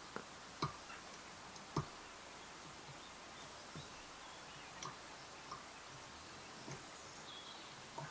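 Faint, sparse clicks and ticks of fly-tying tools being handled at the vise, about seven over several seconds, the loudest near the start, over low room hiss.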